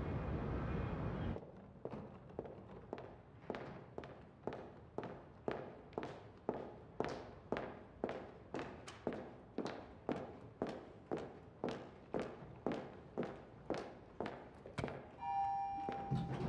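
Footsteps of hard-soled shoes on a polished stone floor, a steady run of sharp clicks about three a second, after a brief steady city hum. Near the end a single elevator chime rings.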